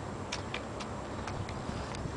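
A few faint, irregularly spaced light clicks over a steady low background hiss.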